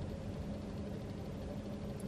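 Steady low hum of a parked car heard inside its cabin, with one constant tone.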